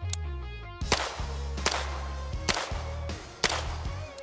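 Four single gunshots from a carbine, spaced a little under a second apart, one round fired at each of four targets.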